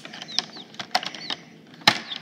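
Irregular light clicks and taps of small plastic miniature toy items being handled, with one sharper knock shortly before the end.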